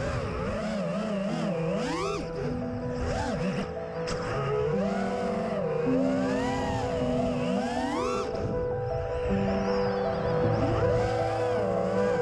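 Background music with steady held notes, over the whine of an FPV racing quad's brushless motors. The motor pitch swoops up and down with throttle several times.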